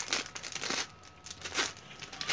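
Courier package wrapping and its printed waybill being torn open and crumpled by hand, in several irregular crinkles and rips.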